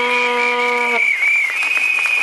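Protest crowd reacting with shrill whistles and applause, with a horn blast held on one note for about the first second.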